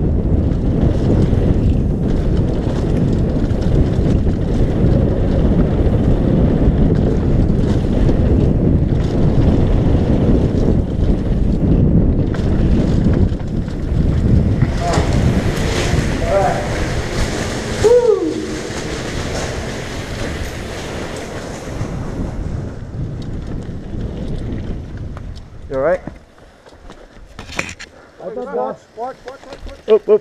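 Wind buffeting a helmet-mounted camera and a mountain bike rattling down a rocky trail at speed. About halfway through, the noise turns louder and hissier while the bike passes through a corrugated culvert tunnel, with a brief shout. Near the end the noise drops away as the bike slows, and short bits of voices come in.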